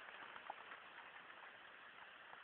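Near silence: a faint steady hiss with a few soft ticks, one about half a second in.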